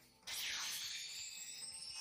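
Anime sound effect of power building up: a steady hiss with a faint, slowly rising high whine, starting a moment in.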